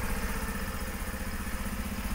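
Honda Super Cub 50 DX's air-cooled single-cylinder 49cc SOHC engine idling steadily, with rapid, even exhaust pulses and no worrying noises.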